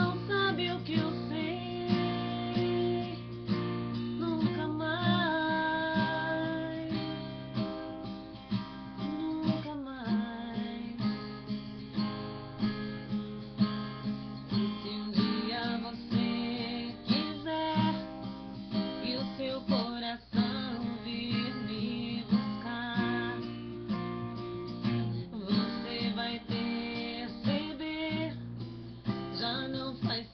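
A woman singing a song over a strummed acoustic guitar, her voice wavering in pitch on held notes.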